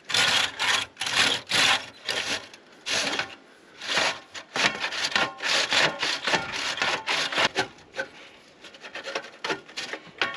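A chimney brush on a rod scraping up and down inside a metal wood-stove flue pipe, in a run of uneven strokes about two a second with a short pause a little after three seconds in. The brush is scouring soot and pine-resin deposits from the pipe wall.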